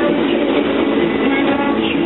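Passenger train running steadily along the rails, heard from inside the carriage.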